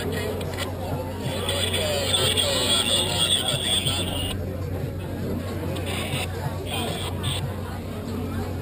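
Indistinct chatter of several people talking at once, over a steady low hum. A brighter hiss rises about a second in and cuts off suddenly about four seconds in.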